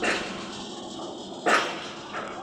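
A dog barking: two short, loud barks, the second and louder one about a second and a half after the first.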